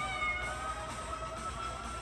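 A domestic cat meows once, briefly, near the start, over quiet background music with a long held tone.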